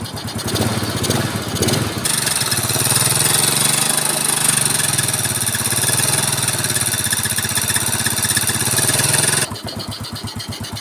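Yamaha Mio Soul scooter's single-cylinder four-stroke engine idling smoothly after a rebuild with a new cylinder block, camshaft, rocker arms and oil pump. About two seconds in it gives way to a louder, harsher idle with a steady hiss: the same engine before the repair, running rough from a worn camshaft and rocker arms damaged by a seized oil pump. The smooth idle returns near the end.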